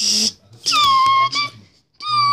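A child's voice making toy sound effects: a short breathy hiss, then a high-pitched squeal that slides down slightly and holds for about a second before breaking off.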